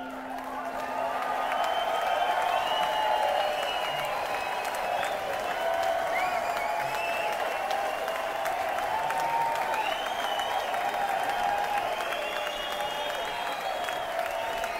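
Concert audience applauding and cheering, with whoops and whistles rising and falling over the clapping. A held acoustic guitar note fades out in the first couple of seconds as the applause swells.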